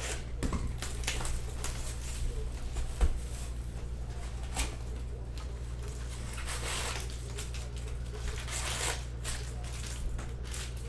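Foil trading-card packs and a cardboard box being handled, with crinkling and rustling in short bursts and a sharp knock about three seconds in, over a steady low hum.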